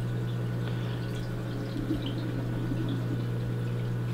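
Aquarium water circulation running: a steady low hum with faint bubbling and trickling of water beneath it.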